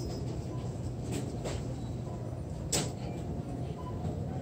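A steady low machine hum with a few light, sharp clicks, the loudest about three seconds in.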